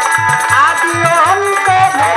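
Live Bengali Baul folk music: a woman singing while playing violin, over a steady hand-drum rhythm and jingling percussion. The melody holds long notes and slides between pitches.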